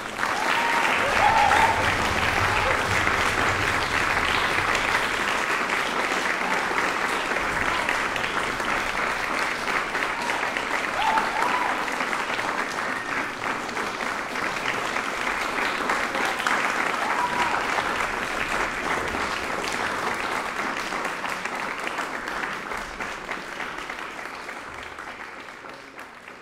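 Audience applause that starts suddenly and continues steadily, fading out near the end.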